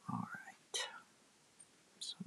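A woman's brief murmured vocal sound, then a short breathy whisper a little under a second in, followed by quiet room tone.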